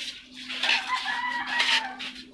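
A rooster crowing once: one call of about a second and a half, starting about half a second in and sagging slightly in pitch. A faint steady hum runs underneath.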